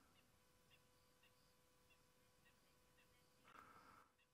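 Near silence: faint outdoor background with a few very faint, short, high chirps scattered through it.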